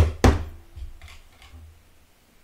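Thumps and knocks of handling close to the microphone, two heavy ones at the start, then a few lighter taps that die away by about halfway.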